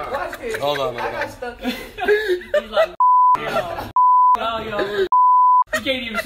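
Three short censor bleeps, each one steady high tone, cutting words out of people's talk: the first about three seconds in, the second about a second later, and a slightly longer one just after five seconds.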